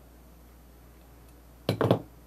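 Faint room tone, then near the end a short clink and knock, a quick cluster of sharp hits lasting about a third of a second, as hard objects such as the metal scissors and the teapot under the cozy are handled.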